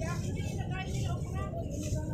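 Background voices of people talking, not the person filming, over a steady low rumble.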